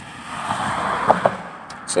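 A road vehicle passing by: a rushing noise that swells over the first half second and fades away by about a second and a half in.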